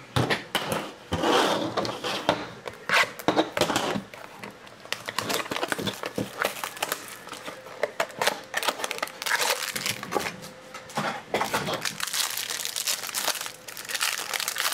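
Clear plastic wrapper of a trading-card pack crinkling and tearing as it is handled and ripped open by hand, in a run of irregular crackles.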